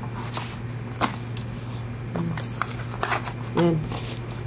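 Cardboard rubbing and scraping as a small cardboard box is pressed down into a tight gap inside a larger box, with a few light knocks and rustles.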